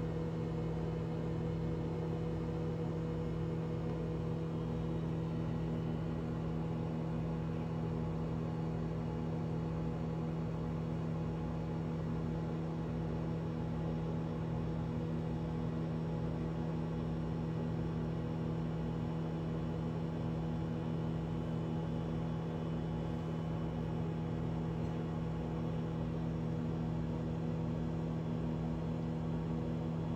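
Sensor microwave oven running on a timed cook: a steady electrical hum with several pitched tones over the low rush of its fan, heating a covered bowl of egg and water.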